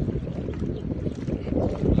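Wind buffeting the microphone, a loud uneven low rumble, over the rush of a fast river around a bamboo raft.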